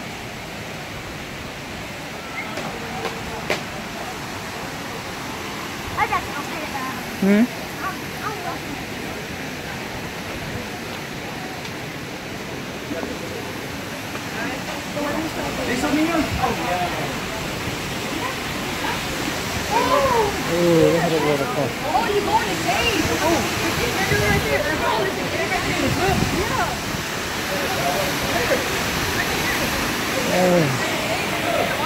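Steady rush of a waterfall pouring into a plunge pool, with indistinct voices of people that grow louder and busier in the second half.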